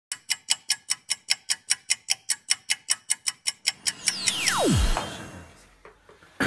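Edited intro sound effect: rapid, even ticking at about five ticks a second for nearly four seconds, then a whoosh with a steeply falling tone that fades away.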